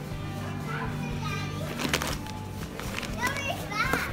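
High-pitched children's voices calling and chattering twice, over a steady low hum, with a sharp knock about two seconds in and another near the end.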